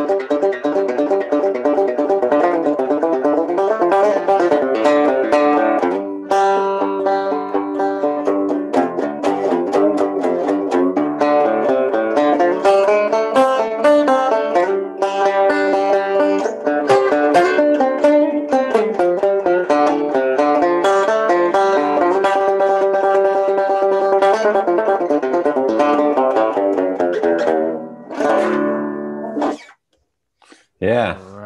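Deering six-string banjo played solo in a fast run of rapid picked notes in a double down-up picking pattern, ending with a final chord that rings out and dies away near the end.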